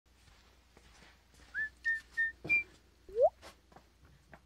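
A short whistled intro sting: four brief high notes, then a quick upward swoop near the end.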